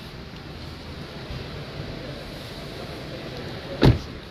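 Steady hubbub of a crowded auto-show hall, with one loud, short thump near the end.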